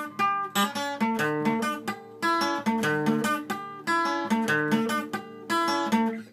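Acoustic guitar playing a short picked riff that repeats about three times, one higher note ringing on over the changing lower notes: a variation worked out on an earlier lick.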